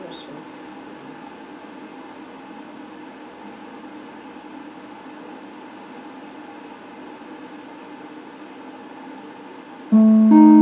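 Steady low hum from an electric guitar rig, with no notes played. A loud electric guitar note strikes in right at the end.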